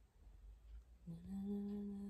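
A voice humming a wordless tune on "na na na": a short pause, then one long steady note starting about a second in.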